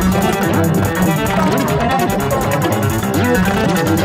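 Bowed cello in a dense, layered electronic track, with sliding pitches over a fast, steady pulse.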